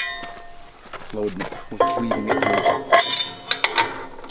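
Metal clinks and knocks from a barbed wire dispenser's disc cap being set onto and spun down a roll's threaded spindle. A sharp clink at the very start rings briefly, and a busier run of clinks and rattles follows from about two seconds in.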